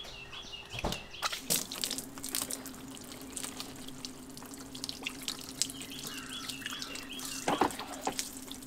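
Water pouring in a steady stream from a nozzle-less garden hose onto a car's ceramic-coated door and windows and splashing off the paint, with scattered splatter.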